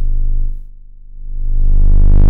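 Low, buzzy synthesized tone from Bitwig's Parseq-8 step modulator run at audio rate, its two steps forming a square-like wave that the smoothing control rounds off. About half a second in the tone dulls and drops in level, then swells back brighter and louder.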